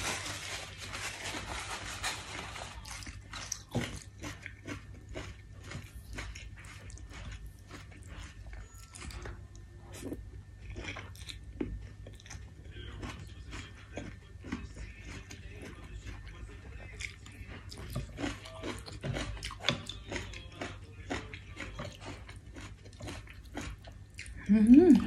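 Close eating sounds: rice noodles in broth being slurped and chewed, with many quick wet clicks and smacks of the mouth. There is a longer, noisier slurp in the first couple of seconds.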